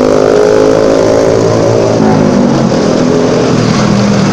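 Motorcycle engine running really loud in traffic. Its steady tone holds, then eases off about halfway through.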